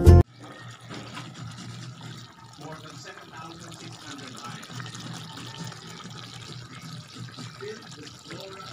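Steady watery hiss, like running or bubbling liquid, with faint voices in the background.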